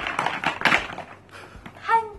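A woman's breathy vocal sounds in the first second, then a short high-pitched exclamation that rises and falls near the end.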